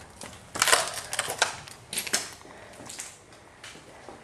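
Irregular crunching and rustling, like something being crushed or brittle material breaking under pressure. The loudest crackle comes just over half a second in, with smaller ones around one and a half and two seconds in.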